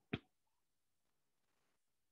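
Near silence, broken once a fraction of a second in by a single short, sharp click.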